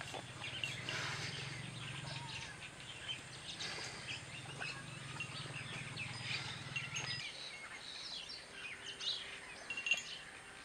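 Birds chirping in many short calls, over a low steady hum that cuts off about seven seconds in.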